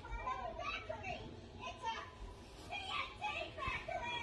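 High-pitched, child-like voices chattering and calling in short, rising and falling cries, with no clear words.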